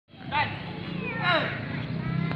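Two short voice calls, one near the start and one past the middle, over a steady low hum.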